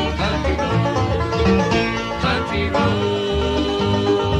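Bluegrass string band playing an instrumental passage without singing: banjo and guitar over a steady upright bass line, with wavering sustained notes above from a fiddle or mandolin. A live, slightly distant stage recording.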